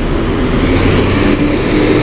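Engine of a single-deck bus pulling away past the camera, a loud, steady engine noise.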